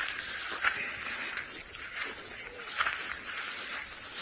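Footsteps through dry grass and sand, with grass rustling, against a steady outdoor hiss of bush ambience.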